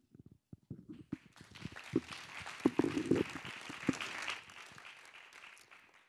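An audience applauding in a large auditorium: scattered claps begin about a second in, build to a full round of applause, then die away near the end.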